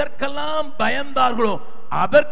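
A man preaching in Tamil into a hand-held microphone, speaking in long, drawn-out phrases with almost no pause.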